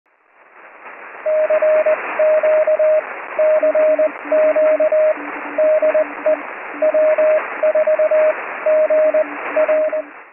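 Morse code (CW) heard on a shortwave radio receiver: two stations keying dots and dashes at different pitches over a steady hiss of static. The static fades in over the first second, and the higher tone is joined by a lower one about three and a half seconds in.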